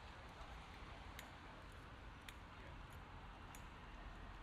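Near silence: faint outdoor background hush, with three soft ticks about a second apart.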